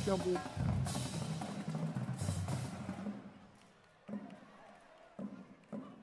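High school marching drumline playing snares, tenor drums and bass drums with crash cymbals, the cymbals crashing three times in the first half. The playing then stops and dies away to near silence, with a few faint hits near the end.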